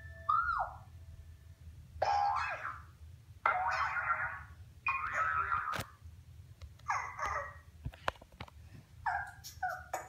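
A springy boing sound effect falling in pitch, then a string of short rough sound bursts about every one and a half seconds.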